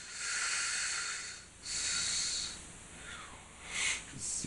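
A man breathing audibly into the microphone: two breaths of about a second each, then a shorter one near the end.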